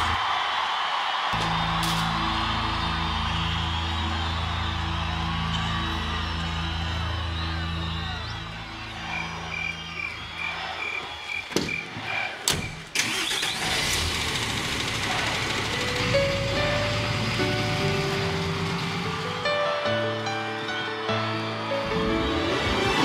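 Background music with held low chords gives way to a car scene: a short run of quick high beeps, a couple of sharp clicks about halfway through, then a car engine running under the music as new notes come in.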